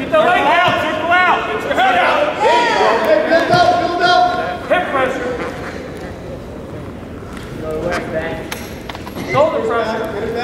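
Indistinct shouting from the sidelines of a wrestling match: several loud, drawn-out yells through the first half, quieter voices in the middle, and another shout near the end.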